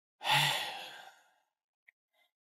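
A single sigh: one breathy exhale, strongest at its start and trailing off over about a second.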